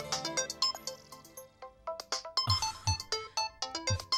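Mobile phone ringtone playing a quick melody of short, bright notes with a few low beats.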